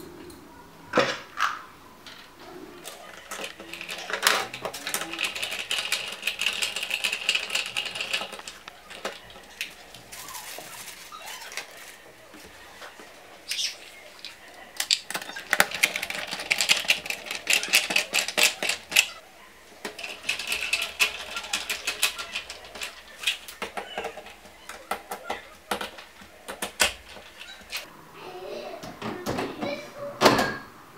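Bolts being driven by hand screwdriver through a steel Kessebohmer lift-mechanism bracket into the back of a TV, heard as several spells of rapid metallic clicking and scraping.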